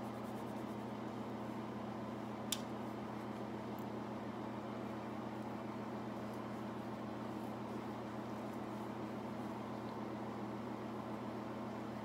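Steady low hum and hiss of room noise, with one short click about two and a half seconds in.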